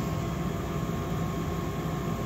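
Lennox gas furnace running, a steady hum with a rush of air and no distinct clicks.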